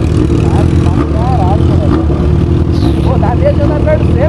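Motorcycle engines idling steadily side by side at a stop: the inline-four of a Yamaha XJ6 close up, with a Suzuki GSX-R sport bike alongside.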